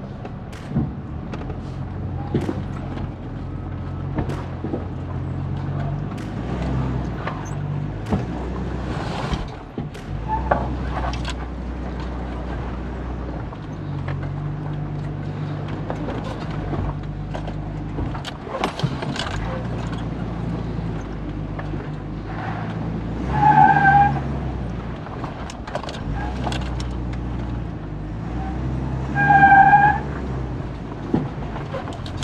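Toyota Land Cruiser 80 Series engine heard from inside the cab, running at crawling speed over rock ledges, with scattered knocks and rattles from the truck body and gear. Twice near the end a louder short steady high tone sounds.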